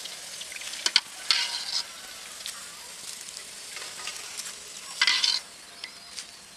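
Pani puri shells deep-frying in hot oil, sizzling steadily. The sizzle swells loudly twice, about a second in and near the end, with a few sharp clicks just before the first swell.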